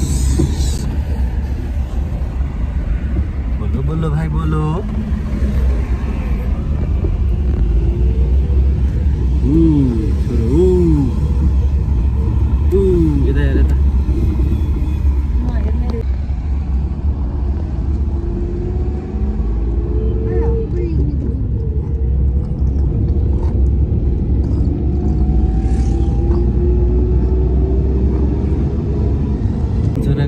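Car cabin noise of a car driving on a road: a steady low rumble throughout, with a few short pitched vocal sounds about ten seconds in.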